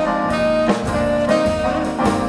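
Live jazz band playing swing: saxophone over piano, double bass and drums, with a steady beat.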